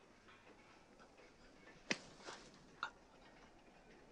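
Near quiet, with three short sharp clicks a little under two seconds in, spread over about a second; the first is the loudest.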